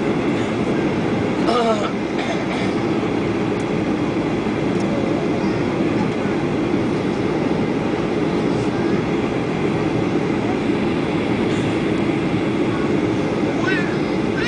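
Steady, loud cabin noise of an airliner in descent: engines and rushing airflow heard from inside the passenger cabin, an even low rumble.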